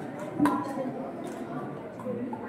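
Faint, indistinct voices talking, with one sharp click about half a second in.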